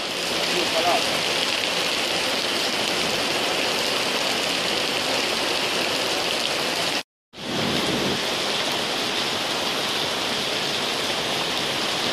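Heavy rain pouring onto wet paving stones, a steady dense hiss that drops out for a moment about seven seconds in.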